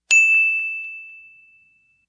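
A single bright ding sound effect: one bell-like tone struck sharply, then fading away over about a second and a half.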